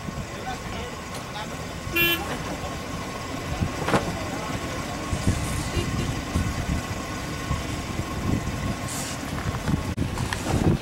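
Outdoor background noise with indistinct voices and a faint steady tone. A vehicle horn gives a brief toot about two seconds in.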